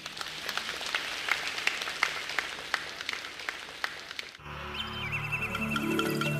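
An audience applauding, with many sharp separate claps, for about four seconds. It cuts off suddenly and music starts: a melody over a steady low bass.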